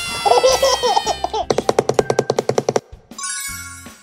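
Cartoon sound effects: a warbling cartoon voice, then a rapid mechanical rattle of about ten strokes a second lasting over a second, then a high sparkling chime near the end.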